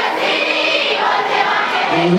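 Live stage music with singing: choir-like group voices over the backing music, with the lead male vocal's held notes dropping back until near the end.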